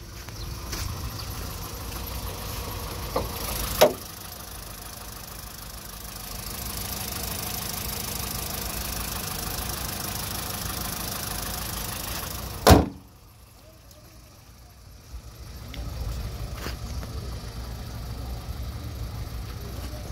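Volkswagen Polo Vivo 1.4 four-cylinder petrol engine idling with the bonnet open, with a sharp knock about four seconds in. Near the middle a loud slam, the bonnet being shut, cuts the engine sound down sharply.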